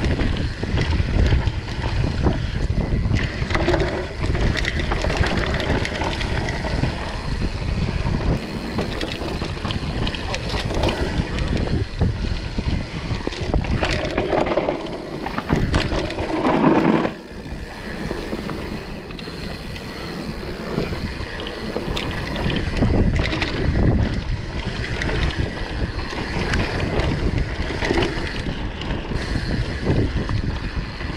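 Wind rushing over the camera microphone, mixed with the tyres on dirt and the chain and suspension rattling of a Transition TR11 downhill mountain bike on a fast descent of a forest singletrack. There is a louder burst a little past halfway, then the noise is quieter for a few seconds.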